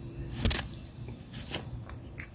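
A brief rustle of handling noise about half a second in, then a few faint ticks.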